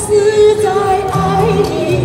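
A woman singing a Chinese pop song into a microphone over an instrumental backing track. She holds one long note at the start, then the melody moves on.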